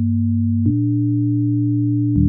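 Software synthesizer holding a low chord of plain, steady tones, the top note stepping up in pitch about two-thirds of a second in.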